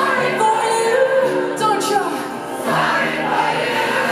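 Live pop-punk band playing with female lead vocals and the audience singing along, recorded from within the crowd.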